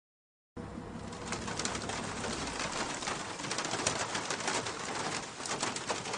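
Heavy rain falling, a steady hiss with scattered sharp patters, starting about half a second in.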